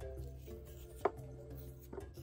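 Background music with a steady bass line, and a sharp click about a second in with a fainter one near the end: a metal spoon tapping and scraping as it takes gel from a cut aloe vera leaf.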